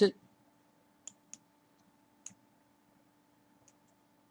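A few faint, sharp clicks from working a computer, two close together about a second in and another a little past two seconds, over a faint steady hum.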